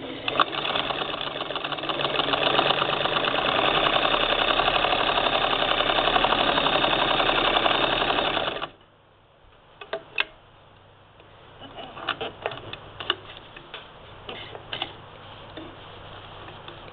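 1947 Singer 66-16 sewing machine running steadily, stitching a tuck with a vintage tucker attachment clamped to its needle bar. It stops suddenly about two-thirds of the way through, leaving a few light clicks and rustles of fabric being handled.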